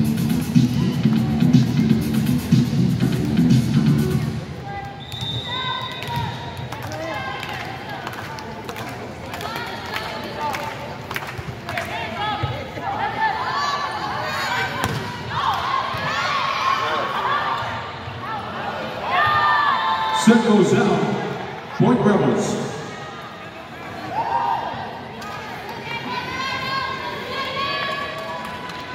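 Volleyball rally in an indoor arena: scattered thuds of the ball being hit, over the voices of the crowd. Arena music plays at the start and stops about four seconds in.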